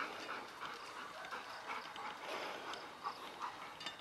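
Outdoor ambience full of short, irregular animal calls, many brief chirp-like notes repeating throughout.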